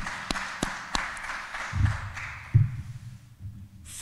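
Light applause from a small audience in an auditorium, a patter of separate claps that dies away about three seconds in. A couple of low thuds can be heard partway through.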